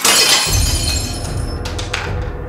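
Glass shattering from a baseball bat blow: a crash right at the start, then breaking glass ringing on and dying away over about a second and a half. Background music with a deep bass comes in about half a second in.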